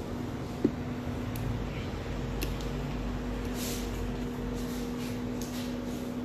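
Laser-edge hairdressing scissors making a few faint, short snips as they trim stray ends of wet hair, over a steady low hum, with one sharper click a little over half a second in.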